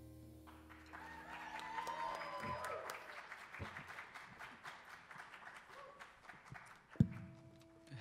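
The jazz ensemble's final chord dies away in the first second, then the audience applauds, with a few voices calling out. A single sharp thump comes near the end.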